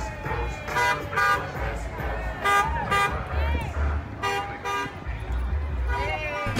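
Vehicle horns honking in short paired blasts, about three pairs, each pair about half a second apart, over crowd voices and a low rumble.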